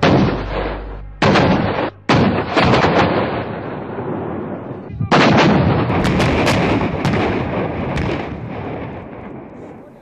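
A battery of Bofors FH-77B 155 mm howitzers firing: four heavy shots, at the start, just over a second in, about two seconds in and about five seconds in, each followed by a long echoing tail. A few sharper cracks fall between about six and eight seconds.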